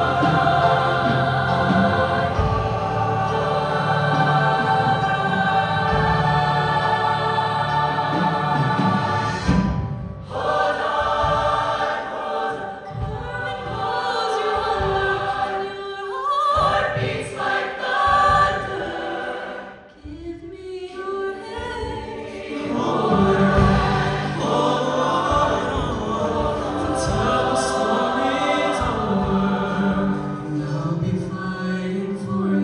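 A large mixed show choir singing in harmony, holding long chords, with a brief break about ten seconds in and a quieter dip about twenty seconds in.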